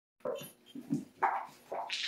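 A few short, irregular sounds from an Australian Labradoodle puppy moving about in a potty box of wood-pellet litter.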